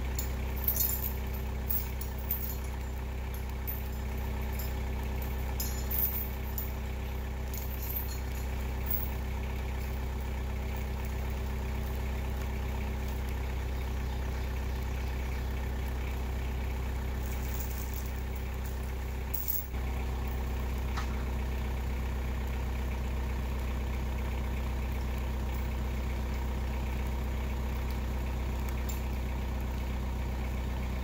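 An engine idling steadily, a low even hum, with a few light knocks in the first several seconds and a brief dip about twenty seconds in.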